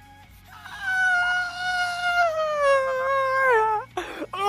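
A man's long, high-pitched wail held for about three seconds, starting about half a second in, its pitch sinking slowly and then dropping off at the end: an overwhelmed scream of disbelief.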